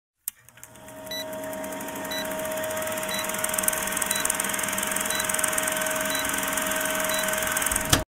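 Old-film countdown leader sound effect: a steady noisy whir with a held hum tone and a short beep once a second, growing louder over the first seconds, then cutting off suddenly at the end.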